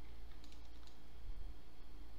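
A few faint clicks of a computer keyboard and mouse while working in 3D software, over a steady low hum.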